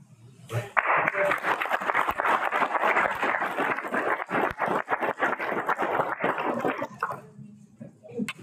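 Audience applauding, starting about a second in and dying away about six seconds later.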